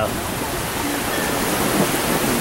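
Heavy rain pouring down in a steady downpour, an even rushing hiss of water.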